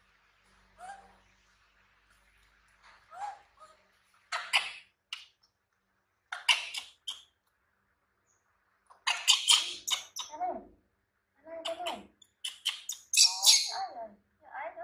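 A baby macaque giving short, high-pitched squeaks and whimpers in clusters, mixed with the crinkle of a disposable diaper being unfolded. Two faint falling cries come first; the louder bursts start about four seconds in and get busier toward the end.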